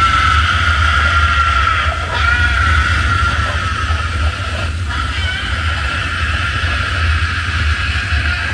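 Film sound effects of hell: a deep, steady rumble under high, drawn-out screaming that wavers in pitch, dipping briefly about two and five seconds in.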